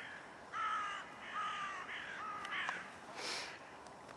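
A crow cawing three times, a little under a second apart, with harsh, rasping calls. A short rush of noise follows about three seconds in.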